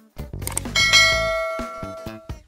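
A bell-ding sound effect from a subscribe and notification-bell animation: one bell strike that rings out and fades away over about a second and a half.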